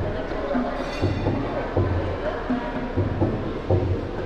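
Johor ghazal ensemble playing: low tabla drum beats about once a second under sustained harmonium and violin.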